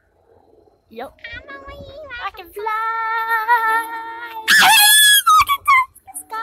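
A person's voice: a long wavering cry that breaks into a loud, high-pitched scream about four and a half seconds in, followed by a few short cries.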